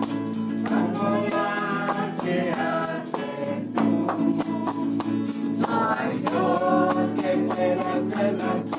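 Voices singing an upbeat Christian song in chorus over a steady shaker rhythm.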